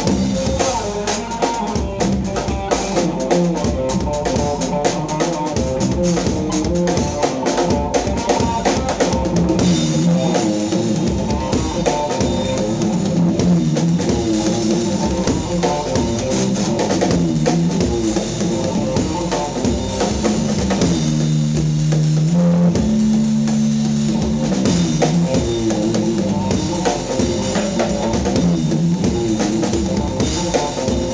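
Electric guitar and drum kit playing a fiery, funky fusion improvisation live: busy guitar lines over driving kit drumming with bass drum and cymbals. The piece is built on raag Adana in a 12-beat cycle.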